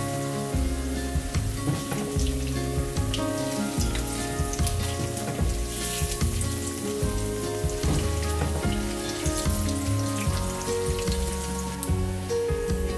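Batter fritters frying in hot oil in a wok, a steady sizzle with fine crackling, under background music.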